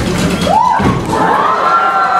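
A crowd cheering, with children's shouts. About half a second in there is a short rising-and-falling shout, and from about a second in a long high shout is held.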